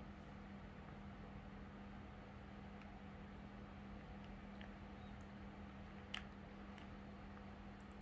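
Near silence: room tone with a steady low hum, and one faint click about six seconds in.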